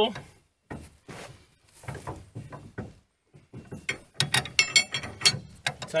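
Steel wrenches clinking and clicking on a trailer hitch ball's nut as it is tightened: scattered clicks at first, then a quick run of clicks in the second half.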